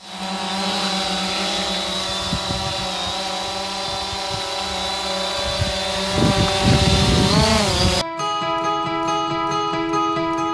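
A small quadcopter drone's rotors buzzing close by with a steady whine, the pitch dipping and rising about seven seconds in, with low rumbles of rotor wash buffeting the microphone. About eight seconds in the sound cuts off abruptly to guitar music.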